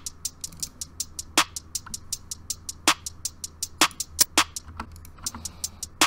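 Trap drum loop from a drum machine: two layered hi-hats ticking fast, about eight a second, with a clap landing about every one and a half seconds.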